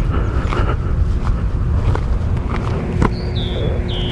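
Suzuki Boulevard C50T motorcycle's V-twin engine running at low speed as it rolls along a gravel road, a steady low rumble mixed with wind noise. A brief high chirp comes about three seconds in.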